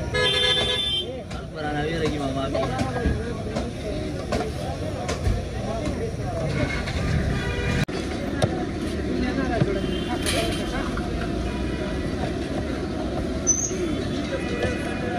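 A vehicle horn sounds once for about a second at the start, over steady roadside traffic noise.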